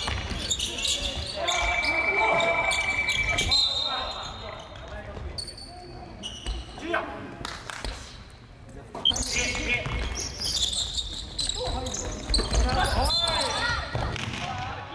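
Live basketball game sound in a reverberant gym: a ball bouncing on the hardwood floor, players' voices and shouts, and a referee's whistle trilling shrilly for about two seconds, starting about a second and a half in, with another short high whistle around the middle.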